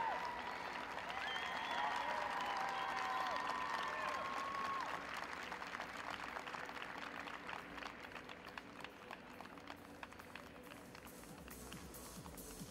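Arena audience applauding a finished figure-skating performance, the clapping fullest in the first five seconds and thinning out after that.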